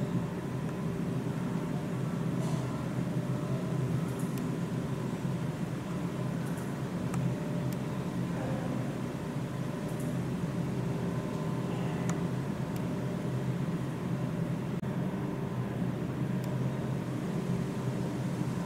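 Steady low mechanical hum with a few faint clicks scattered through it.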